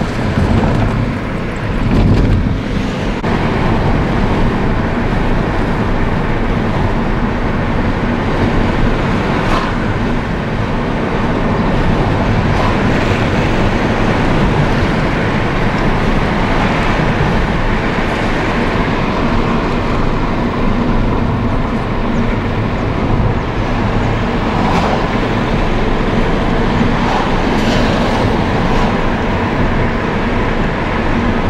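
A moving car's road noise: a steady rumble of tyres and engine, with a few faint brief knocks.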